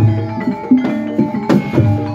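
Javanese gamelan music for an ebeg horse dance: ringing struck keys and sharp drum strokes in a steady rhythm, over a held tone.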